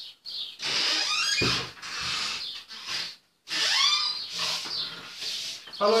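High-pitched squealing from a person's voice, sliding up and down in pitch, repeated several times with short gaps.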